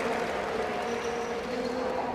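Steady background noise of an indoor sports hall, with a faint hum running through it.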